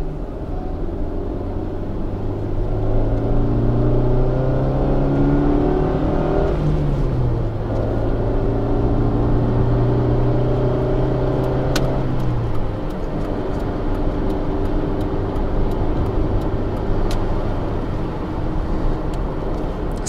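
Mazda 323F's engine accelerating, heard from inside the cabin. Its pitch climbs for about six seconds, drops at a gear change, climbs again and drops at a second upshift about twelve seconds in, then settles to a steady motorway cruise.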